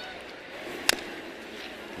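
Ballpark crowd murmur, with one sharp crack of a bat meeting the pitch about a second in, hitting a slow ground ball to third base.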